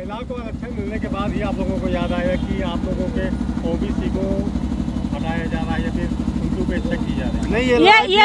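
An engine idling close by: a steady, rapid low throb. Faint voices talk over it.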